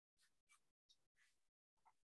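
Near silence, broken by several faint, brief snatches of noise that cut in and out abruptly, as if gated.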